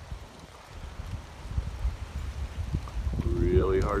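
Gusting wind buffeting a phone microphone, heard as an uneven low rumble. A man's voice comes in near the end.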